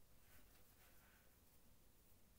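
Near silence: room tone, with faint soft rustling of cotton yarn as a crocheted drawstring is threaded through the mesh of a pouch.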